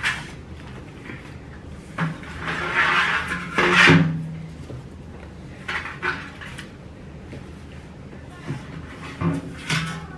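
A hand rummaging inside a galvanized metal planter, rustling and scraping the artificial flowers packed in it against the metal. A long scrape runs from about two to four seconds in and ends in a sharp knock, the loudest sound. Shorter rustles and knocks follow near the middle and the end.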